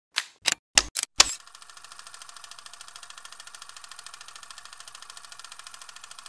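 Logo-sting sound effect: five sharp clicks in the first second or so, then a steady fast ticking at about ten ticks a second.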